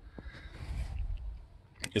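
Faint rustle and low rumble of a phone camera being moved around, with a single light click just after the start; a man's voice starts again near the end.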